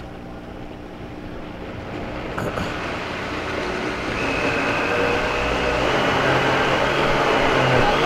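Countertop blender running, its speed turned up from low toward high as it purées cooked vegetables and water into a smooth soup. The motor grows steadily louder, and a high whine joins about halfway through.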